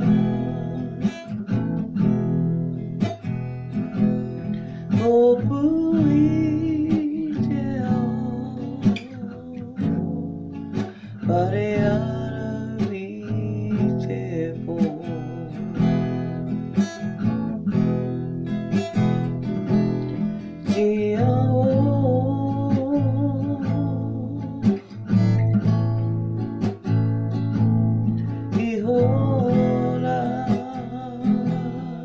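A woman singing a Māori song with vibrato, accompanying herself on a strummed acoustic guitar. The guitar strokes keep a steady rhythm while the sung phrases come and go.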